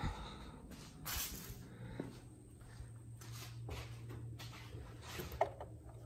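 Plastic engine covers on a C7 Corvette V8 being handled and worked loose, giving a few faint light knocks and rustles over a steady low hum.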